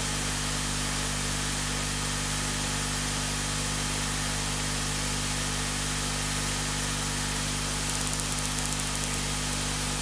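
Steady hiss with a low, even hum underneath: the background noise of the room and recording, with no speech. A brief run of faint rapid ticks sounds about eight seconds in.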